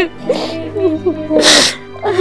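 A woman sobbing over soft, sad background music, with two sharp, breathy sobs or sniffs, the louder one about a second and a half in.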